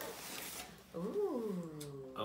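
A cardboard box lid opening, with a papery rustle for about the first second. It is followed by a long, drawn-out vocal exclamation of delight that rises and then falls in pitch.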